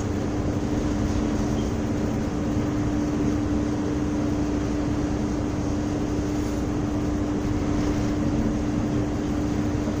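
Steady drone of a small tanker's engine and machinery while under way, with one constant hum note in it.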